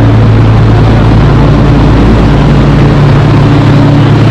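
Light-rail train standing at a station platform with its doors open, giving a loud, steady low hum over a rumbling background.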